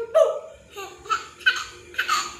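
A baby laughing in short breathy bursts, four of them spaced about half a second apart.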